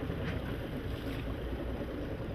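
Wind buffeting the microphone over the steady rush and splash of choppy sea water.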